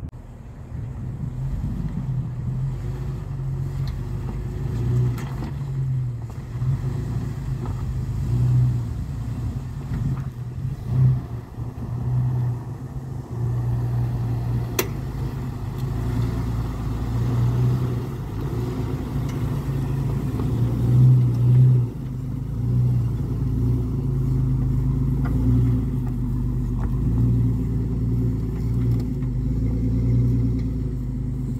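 Jeep Wrangler engine running at low revs as it crawls over rocks, the hum swelling and easing with the throttle. A single sharp click comes about halfway through.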